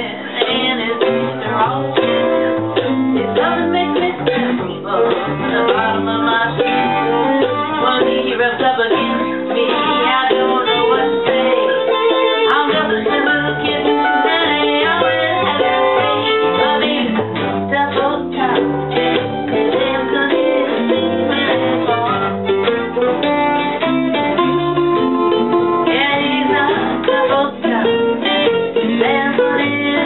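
String band jamming on a blues tune: fiddle, acoustic and electric guitars and upright bass playing together, with steady strummed rhythm throughout.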